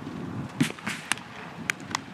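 Baseballs striking leather gloves on a practice field: about five sharp pops in two seconds, over a low, steady background noise.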